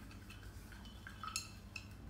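A glass jar being handled and opened to take out a 'dose': a few faint, light clinks of glass.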